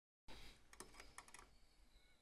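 A few faint clicks and taps, bunched together in under a second, as a screwdriver is handled and its tip set against the screw on the back of an old dial telephone's plastic case.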